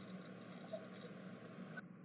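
A pause with nothing but a faint, steady background hiss.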